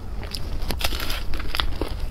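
Crisp fried chicken drumstick being chewed close to the microphone: a run of sharp, crunchy crackles, thickest in the middle.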